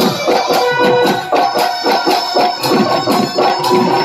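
Live Bihu folk music: a fast, steady drum beat with held melodic notes over it.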